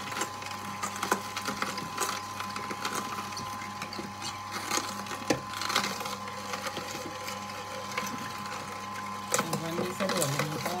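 Irregular knocks and clicks of kitchen utensils and food being handled while smoothie ingredients are prepared.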